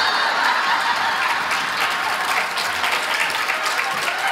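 Large audience applauding and laughing at a punchline, a dense steady wash of clapping.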